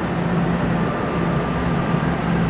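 NJ Transit Multilevel double-deck passenger coaches rolling along the track: a steady rumble of wheels on rail with a low hum.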